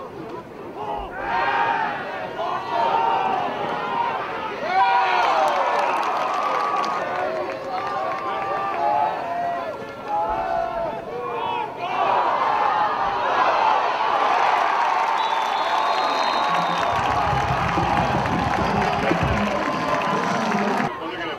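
Football crowd and sidelines cheering and shouting, many voices overlapping. It swells louder about twelve seconds in, with a low rumble under it in the last few seconds.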